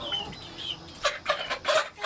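Chickens on a roost clucking in short, grumbling calls, with several louder ones crowding together in the second half, as they squabble over who gets the best spot on the perch.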